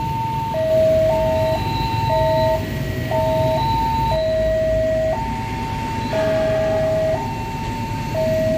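Railway level-crossing warning alarm sounding: a two-tone electronic signal that alternates high and low about every half second, warning of an approaching train. A low rumble runs underneath.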